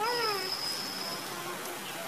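A ginger kitten gives one short mew that rises and falls in pitch, right at the start. A thin, steady high tone runs under it for about the first second.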